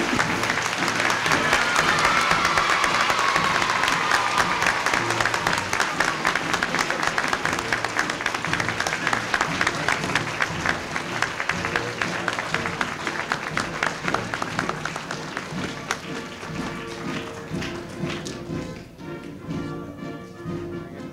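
An audience applauding over music. The clapping is loudest at the start and fades and thins out towards the end.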